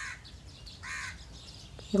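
A crow cawing twice, short calls about a second apart, under a faint rustle of wheat grains being stirred in a dry aluminium pan.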